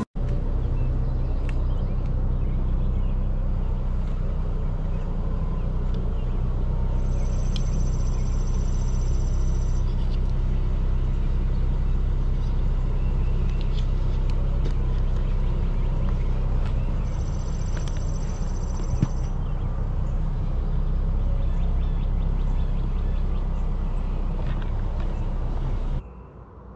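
Steady low rumble, with a few faint clicks and one sharp click about 19 seconds in.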